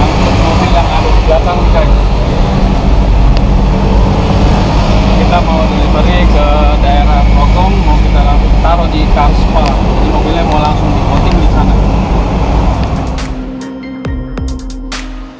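Loud, steady drone of a small truck's engine and road noise heard inside its cab while driving, with a man talking over it. Near the end the drone gives way to music.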